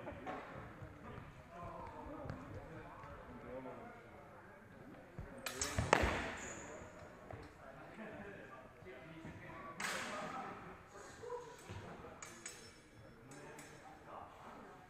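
Steel practice swords clashing during sparring, echoing in a large sports hall: a loud flurry of blade contacts about halfway, another strike a few seconds later and a quick run of clashes near the end, some leaving a short metallic ring. A murmur of voices runs underneath.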